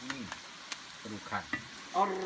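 Pieces of marinated meat frying in hot, bubbling oil in a pan: a steady sizzle, with a metal spatula clicking against the pan near the middle as the pieces are turned.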